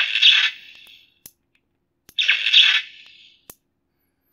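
Savi's Workshop lightsaber's built-in speaker giving two harsh crackle bursts, each about a second long and about two seconds apart, as a mechanical switch wired into its electronics powers it on. The crackle is the saber's sound for being switched on without a blade or kyber crystal, the sign that the switch works.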